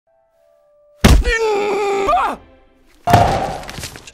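Animated-film sound effects: a heavy thunk about a second in, followed by a long held, wavering cry that falls away, then a second loud impact a second later that dies away.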